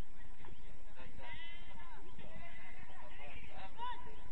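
Football players shouting and calling to each other across the pitch during play: short, high, scattered calls over a steady background hiss.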